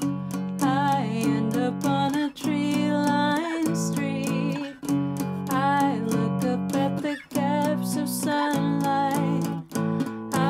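A woman singing over strummed power chords on a small Taylor acoustic guitar, in steady, even strokes, with brief breaks about every two and a half seconds as the chords change.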